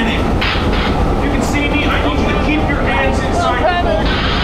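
Steady low rumble of a theme-park boat ride in motion, with a man's voice from the ride's video screens playing over loudspeakers above it from about a second and a half in.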